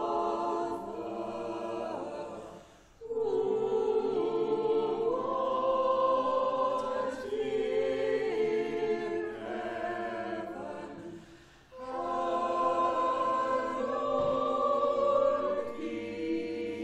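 A choir singing a slow hymn in long held chords, with two brief breaks between phrases, about three seconds in and again near twelve seconds.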